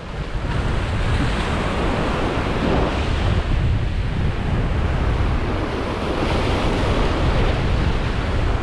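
Ocean surf breaking and washing around rocks, with wind noise on the microphone.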